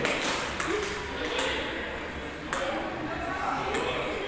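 Table tennis ball being hit back and forth with paddles: four sharp pings, roughly one a second.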